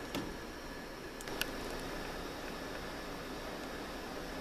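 Quiet steady background hiss, with a couple of faint light clicks a little over a second in.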